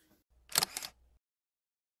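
A short breathy laugh, a few quick puffs of breath, then the sound cuts to dead silence about a second in.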